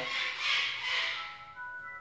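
Windows 7 startup sound playing from a laptop's speakers: a soft shimmering swell, then a few held notes at different pitches coming in one after another near the end. It marks the Windows machine reaching its desktop at the end of booting.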